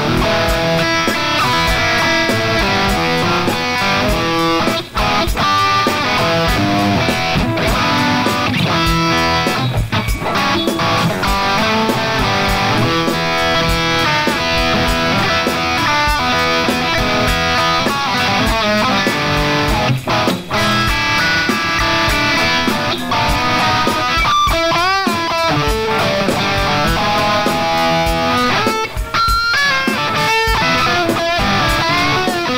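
Electric guitar playing a blues-rock lead line of changing single notes, with a note shaken by wide vibrato a little past the middle.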